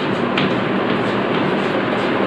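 Chalk scraping on a blackboard as words are written, over a steady rushing background noise. A brief sharper scratch comes about half a second in.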